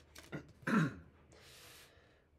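A person clears their throat once, a short, loud, low rasp, followed by a brief soft hiss.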